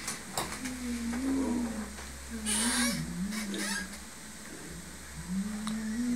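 A single low voice draws out long, slowly wavering sung notes, with a short hiss about two and a half seconds in.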